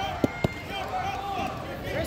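Voices of coaches and spectators calling out in a gymnasium, no single voice clear, with two sharp knocks about a quarter and half a second in.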